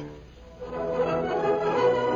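Orchestral radio-drama music coming in about half a second in after a brief lull, with sustained chords.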